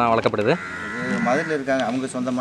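A calf bawling: one long, wavering, bleat-like call that starts about half a second in.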